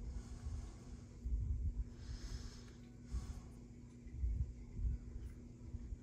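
Quiet handling of small plastic model-kit engine parts between the fingers, with soft low bumps and two short breaths through the nose, one about two seconds in and one about three seconds in. A faint steady low hum runs underneath.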